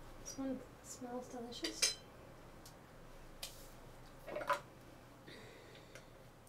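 A spoon clinking and scraping against a small food container, with a few separate clinks, the sharpest just before two seconds in and again around four and a half seconds.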